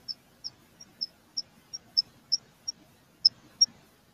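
A run of short, high-pitched chirps repeating about three times a second at a steady pitch, stopping shortly before the end.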